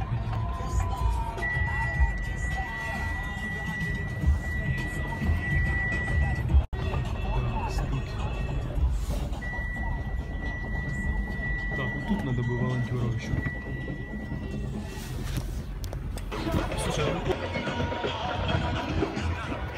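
Car driving slowly, heard from inside the cabin as a steady low road and engine rumble. A single steady high tone sounds over it twice, for about five seconds each time.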